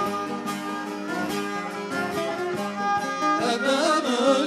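Bağlama (Turkish long-necked saz) being played, its plucked strings sounding a folk melody note after note; a man's voice comes in singing with a wavering line near the end.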